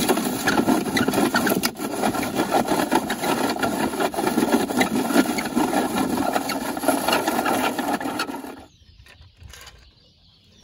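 Dry leaves and grass crackling and rustling steadily as the load shifts inside a toy garbage truck's hopper; the sound stops suddenly near the end.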